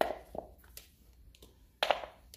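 Handling noises from a USB cable and a 3D-printed plastic helmet: a sharp click at the start, a second click just after, a few light ticks, and a louder short double knock near the end.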